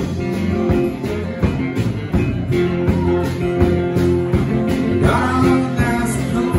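Live band playing a song: strummed acoustic guitar, electric guitar and drum kit over a steady beat.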